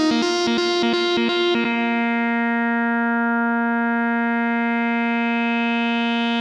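Trance music: a rapidly pulsing electronic chord pattern that gives way, about a second and a half in, to one long held chord with no beat under it.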